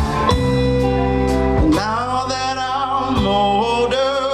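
Live soul band playing, with keyboard and guitar. About two seconds in, a male voice comes in singing long, wavering notes over the band.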